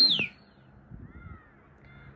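A pigeon keeper whistling to his flying flock: a shrill, high whistle that ends in a quick downward slide a fraction of a second in. A faint, softer whistled glide follows about a second in.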